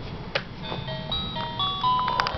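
A simple electronic chime tune, single clean notes stepping up and down, starting just under a second in, after a soft click.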